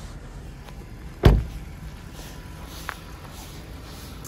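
A car door being shut: a single loud thump about a second in, over a steady low background rumble.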